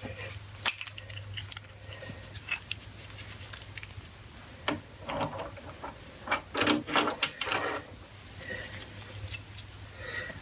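Metal-on-metal clinks and taps as a lathe tool post is handled and set into the compound rest's T-slot on an Atlas lathe carriage: scattered light clicks, coming thicker in the second half.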